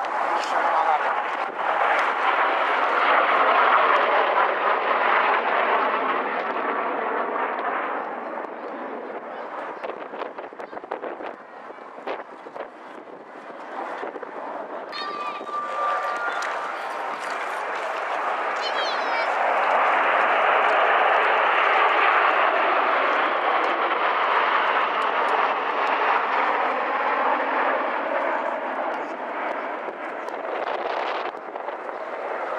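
Kawasaki T-4 jet trainers with twin turbofan engines flying overhead, their jet noise swelling as a pair passes in the first seconds, easing off around the middle, then building again and peaking in the second half as a formation of eight passes.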